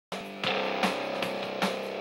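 Backing track in C major: a drum kit keeping a steady beat, about two and a half hits a second, under held chords.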